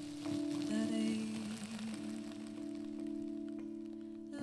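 Small Yamaha keyboard holding sustained chords, with a wavering sung note about half a second in. A plastic bag over the microphone adds a faint crinkling crackle.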